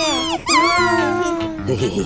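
A cartoon voice making two high, animal-like cries over background music: a short falling one at the start, then a longer wavering one.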